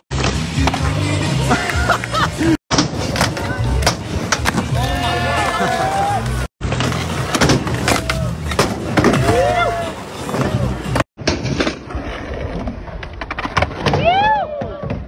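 Skateboards on concrete: urethane wheels rolling, with sharp clacks from tail pops and board landings. Voices and music play underneath, and the sound breaks off briefly three times where short clips are joined.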